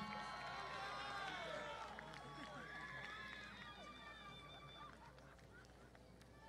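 Distant crowd in the stands cheering and whooping for a graduate, many voices overlapping and dying away over the few seconds.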